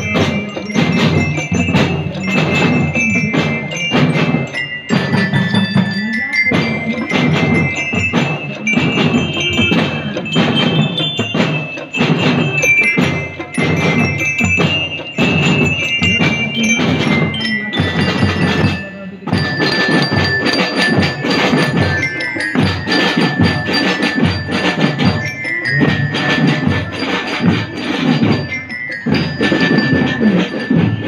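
Marching drum band playing: glockenspiels ring out the melody over rapid snare and bass drum beats. The playing drops briefly about two-thirds of the way through, then picks up again with a new run of bell notes.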